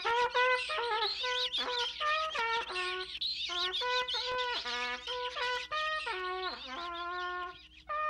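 A cartoon trumpet playing a halting, out-of-tune tune of short held notes, many bending down in pitch at their ends, over a faint steady low hum.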